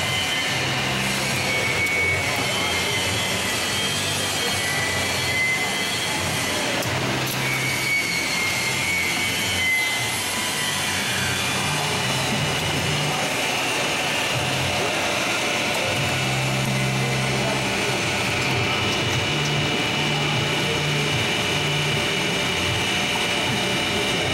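Vincent screw press running with its drive motor turned up to 120 Hz on a variable-frequency drive: a steady mechanical drone with a high whine.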